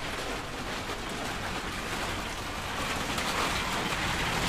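Plastic shopping trolley's wheels rolling over paving slabs, a steady rolling rattle that grows a little louder toward the end.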